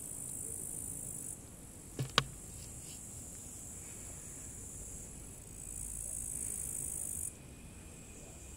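Insects buzzing in a high, steady drone that stops after about a second and starts again for a couple of seconds near the end, with two sharp knocks in quick succession about two seconds in.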